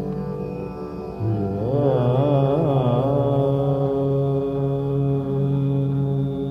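Male voice singing a slow, unaccompanied-by-drums passage of Hindustani classical raag Kaushik Dhwani over a steady tanpura drone: the voice comes in about a second in, wavers up and down in pitch in an ornamented run, then settles on a long held note.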